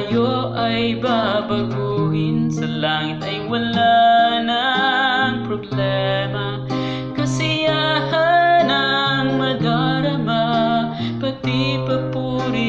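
A sung religious song: a voice singing a melody over guitar accompaniment with held low notes.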